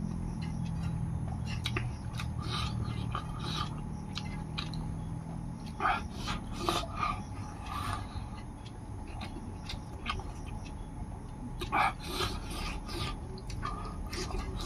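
Eating sounds at close range: chewing and lip smacks while fingers scrape and gather rice across a metal plate, with short clicks and smacks throughout and louder ones about six and twelve seconds in.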